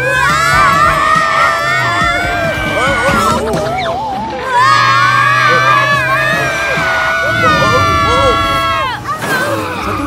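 Cartoon children's voices screaming in panic: long, wavering cries from two voices at once over background music with a steady low bass. The cries break off briefly about four seconds in, then start again and end in a falling wail near the end.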